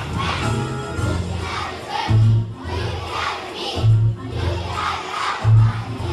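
A large group of young children singing loudly together, half-shouting, over a recorded backing track with a heavy bass line that pulses every second or two.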